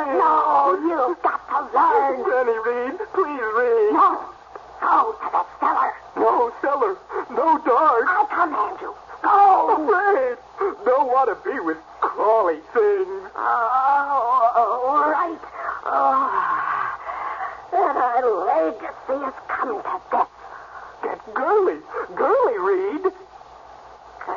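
Human voices from a radio drama, going almost continuously with only brief pauses and a short lull near the end.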